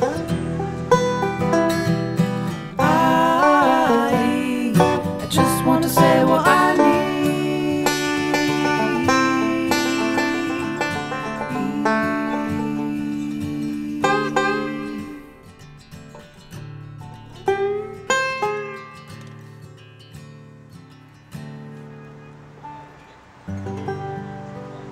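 Banjo-led acoustic folk music playing the instrumental close of a song: full and busy at first, then thinning to a few sparse plucked notes that ring out in the second half.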